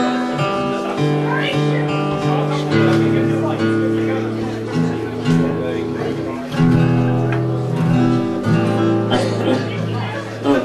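Acoustic guitar strummed, its chords left to ring and changing every couple of seconds while the player checks its tuning.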